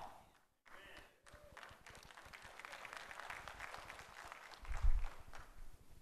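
Faint, scattered applause from a church congregation, building after about a second and a half and fading, with a few low thuds near the end.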